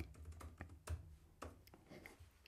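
Faint typing on a computer keyboard: irregular keystrokes, several a second, as a short chat message is typed out.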